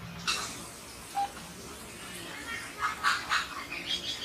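Outdoor ambience with birds calling: a short single chirp about a second in, then a quick run of about three harsh calls around three seconds in.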